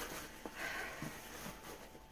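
Faint handling of a cardboard box: a few soft taps and a brief scratchy scrape as the inner box is worked out of its tight sleeve.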